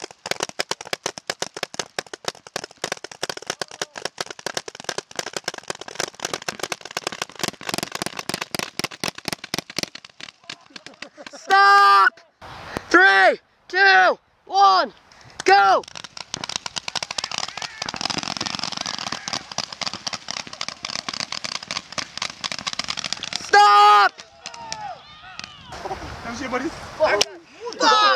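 Several paintball guns firing rapidly, many shots a second, for about ten seconds. Then come five loud yells, another long stretch of rapid fire, and a last yell near the end.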